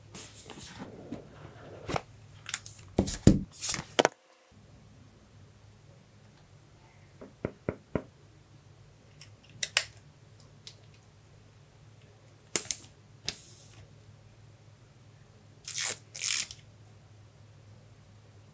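A smartphone's boxed accessories and packaging handled up close: scattered clicks, taps and short rustles of plastic and cardboard. They come loudest in a cluster about three to four seconds in, with further bursts around thirteen and sixteen seconds.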